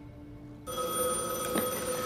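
A landline telephone ringing, starting suddenly about two-thirds of a second in.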